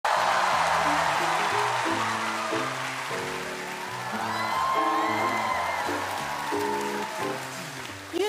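Studio audience applauding over a stage music cue of steady, stepped notes; the clapping is loudest at the start and thins out over the first few seconds while the music carries on.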